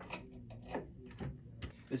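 A hand screwdriver driving a screw through metal counterweight plates, giving a few sharp clicks of metal on metal about half a second apart.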